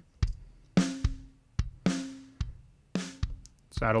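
Logic Pro X virtual drum kit playing a steady kick-and-snare beat, soloed on a parallel bus through a heavily compressed Vintage VCA compressor set around 10:1 with a medium attack, so each hit is clamped down hard after its initial punch. Deep kick thumps alternate with ringing snare cracks, about one snare a second.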